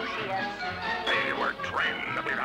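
Cartoon soundtrack music under a character's nasal, wordless comic vocal noises, with pitch glides about a second in and again near the end.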